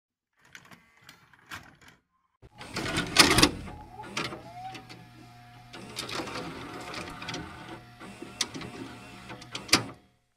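Sparse sharp clicks, then from about two and a half seconds in a denser mechanical clattering with sharp clicks over a low steady hum. It cuts off suddenly at the end.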